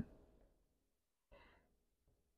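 Near silence: room tone, with one faint, short, soft sound about one and a half seconds in.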